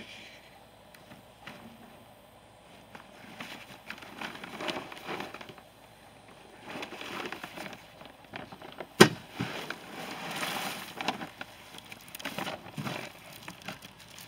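Irregular rustling and crinkling as the shredder's woven plastic collection bag is handled, with one sharp knock about nine seconds in. The shredder's motor is not running.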